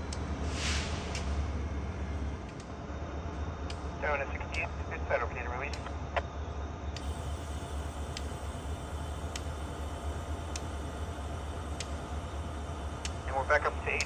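A short burst of hissing air about a second in, from a freight train's air brakes during a brake test, over a steady low rumble.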